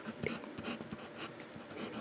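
Waterman fountain pen's gold medium nib writing on paper: a run of faint, short scratching strokes.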